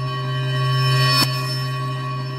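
Logo intro sting: a sustained, bell-like electronic drone that swells up to a bright, sharp hit just past a second in, then rings on a little softer.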